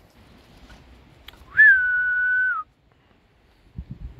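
A person whistling one long, steady note lasting about a second, starting with a quick upward slide and dipping slightly as it ends.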